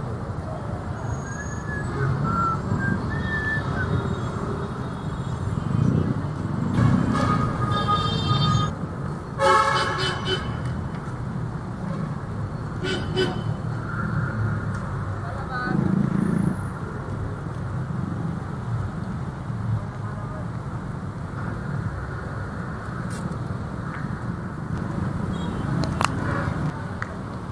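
Busy city road traffic running steadily, with vehicle horns honking: a couple of horn blasts between about seven and ten seconds in, the loudest near ten seconds, and a brief one near thirteen seconds.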